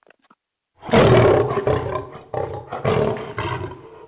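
A recorded lion roar played as a sound effect over the phone-quality broadcast. It starts about a second in and goes on loud in several long surges.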